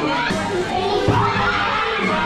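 Crowd hubbub: many people talking at once, children's voices and play among them, over background music.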